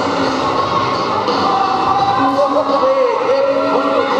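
Many quad roller skates rolling on a wooden sports-hall floor, a steady rumble, under background music and indistinct voices echoing in the hall.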